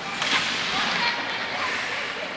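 Ice rink game sounds: hockey skates scraping on the ice, with voices calling out in the arena.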